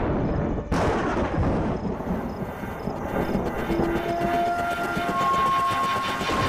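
Suspense background score: a dense low rumble with a sudden loud hit less than a second in, a faint regular ticking about twice a second, then held tones entering one after another.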